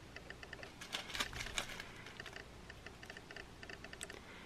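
Faint crinkling and clicking of small clear plastic zip bags of sequins being handled, with a few sharper crackles between about one and one and a half seconds in.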